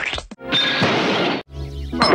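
Soundtrack snippets from 1980s cartoons spliced back to back: music and sound effects in blocks of about a second, each cut off abruptly, with a short dropout between them about a third of a second in and again about a second and a half in.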